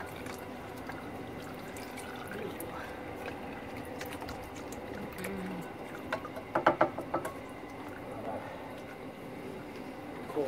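Old engine oil trickling and dripping into a drain tray from where the oil filter has just been unscrewed. About two-thirds of the way through, a short run of sharp knocks and clicks.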